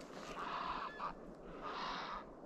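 A bird giving short, harsh calls, three in quick succession, described as a strange call and which the hunter guesses to be a heron.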